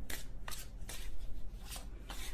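A tarot deck being shuffled by hand: a soft papery rustle with a few light card clicks.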